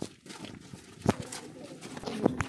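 Rustling and knocks of a handheld phone rubbing and bumping against people's clothing in a close crowd, with a sharp knock about a second in.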